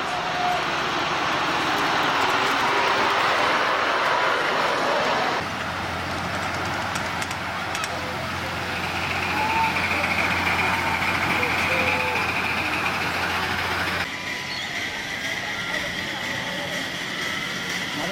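Ride-on miniature railway trains running along the track, in three short shots that change abruptly about five seconds in and again near fourteen seconds. The middle shot adds a steady low hum.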